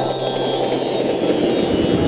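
Cartoon magic sparkle sound effect: a shimmering cascade of wind-chime-like tinkles over a steady rushing whoosh, marking a character's magical appearance.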